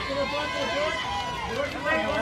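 Several voices overlapping and calling out at once, the chatter of photographers trying to get the posing group to look their way.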